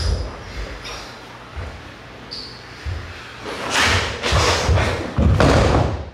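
Bare feet and bodies thudding on a wooden dojo floor during close-range karate sparring. Several scattered thumps build to a busier, louder scuffle, ending with a heavy thud near the end as one fighter is taken down onto the floor.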